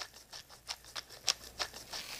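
Hand-held pepper grinder being twisted over fish, making a run of short dry clicks about five a second.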